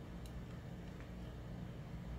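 Steady low room hum with two faint computer mouse clicks, the first a quarter second in and the second about a second in.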